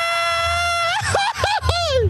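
A man's Mexican grito yelled into a microphone. A high cry is held steady on one pitch, then about a second in it breaks into quick rising-and-falling yelps.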